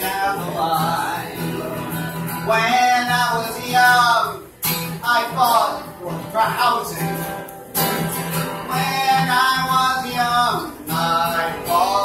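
A man singing to his own strummed acoustic guitar, the voice holding long, bending sung notes over the chords.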